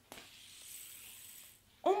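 Fidget spinner spinning, its bearing making a faint steady whirring hiss with a thin high whine that dies away about a second and a half in. A startled exclamation follows near the end.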